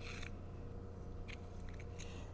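Faint scratchy scraping of a plastic plant tag pushing small seeds along the neck of a plastic handheld seeder, in short bursts at the start and again after about a second and a half, over a low steady hum.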